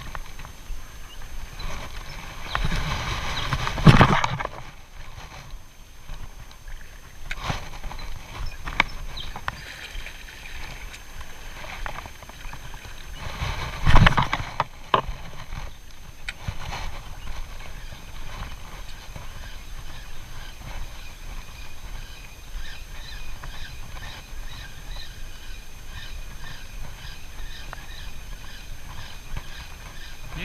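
Light spinning rod and reel being cast and retrieved: two loud casts about 4 and 14 seconds in, then the steady rhythmic ticking of the spinning reel winding the lure back.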